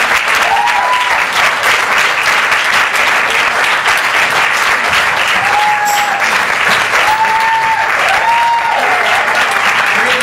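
Audience applauding, with several long whooping cheers rising over the clapping.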